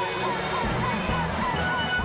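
Fire engine siren yelping, a tone that rises and falls quickly about three times a second, over a low vehicle rumble and background music.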